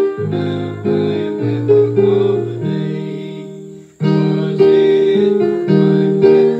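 Piano playing slow hymn chords, each struck and then fading. A phrase dies away just before four seconds in, and a new chord is struck straight after.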